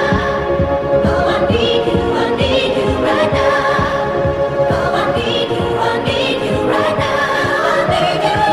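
Electro house DJ mix: a vocal track, with singing over a steady, driving dance beat.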